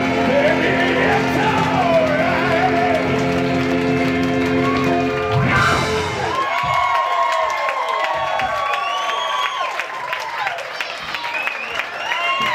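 Live rock band with saxophones and trumpet playing the last held chord of the song and ending on a final hit about halfway through. The crowd then cheers and whoops.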